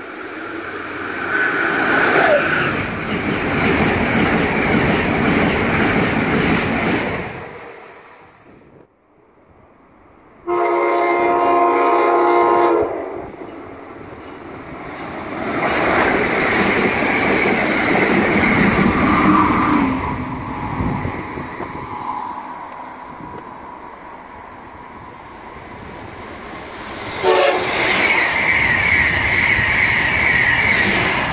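Electric passenger trains passing the platform at speed, each a loud rush of wheel and air noise. A train horn sounds about ten seconds in, a steady chord lasting about two seconds. A second passing rush swells in the middle, and another train bursts in loudly near the end.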